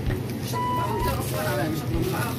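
Background music: a short, high electronic melody figure that steps down slightly and repeats about every two seconds, over a mix of voices.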